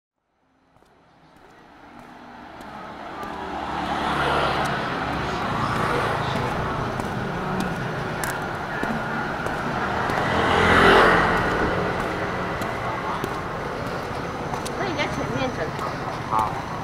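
Street ambience fading in from silence: steady traffic noise with indistinct voices, swelling as a vehicle passes about eleven seconds in.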